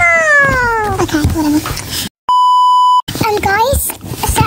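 A child's long, high-pitched vocal cry that slides down in pitch over the first second, followed by child chatter; about two seconds in the sound drops out completely and a flat, steady electronic beep about three-quarters of a second long is spliced in, a censor bleep.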